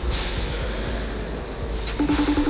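Steady background noise of a large shop in the gap between rings of a FaceTime outgoing call tone.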